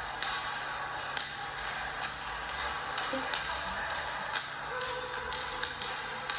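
Sound of a basketball game in an echoing gym: a few sharp taps of a ball bouncing on the hardwood at irregular intervals over a steady hiss.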